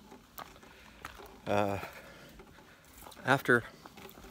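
A man's voice, hesitating: a drawn-out "uh" about a second and a half in, then two short syllables a little after three seconds, with quiet between.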